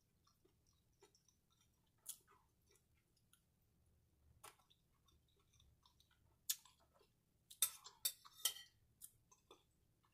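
Faint close-up chewing of chicken tortilla soup with tortilla chips in it: scattered soft crunches and mouth clicks, few at first and more frequent in the second half.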